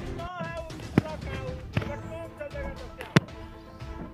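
Three sharp thumps about a second apart, the third the loudest.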